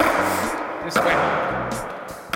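Two sharp hits about a second apart, a skateboard set down on a concrete floor and then stepped on, each followed by a hiss that fades out, over background music with a steady bass line.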